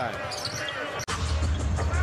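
A basketball being dribbled on a hardwood court over arena crowd noise. About a second in, the sound cuts off suddenly and resumes as louder arena noise with a deep rumble.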